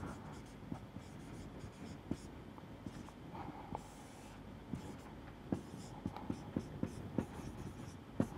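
Felt-tip marker writing on a whiteboard: faint scratching strokes and small taps as the letters are formed, coming more often in the last few seconds.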